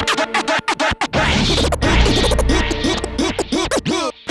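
Hip-hop beat with turntable scratching: quick back-and-forth scratch glides over a chopped rhythm, with a heavy bass swell about two seconds in.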